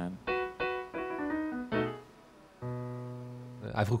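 Grand piano played: a run of about six single notes in the first two seconds, a brief pause, then a chord held and left to ring.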